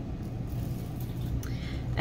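Steady low hum of background noise, with faint rustling of card stock being handled and shifted on a cutting mat.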